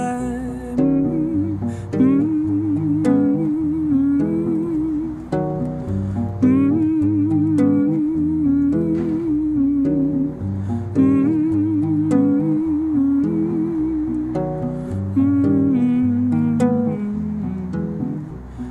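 Acoustic guitar picked and strummed steadily, with a wordless hummed melody over it that wavers in pitch.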